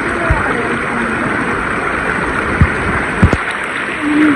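Shallow, fast river rushing over and around rocks, a steady rush of water, with three brief dull thumps near the start, middle and end.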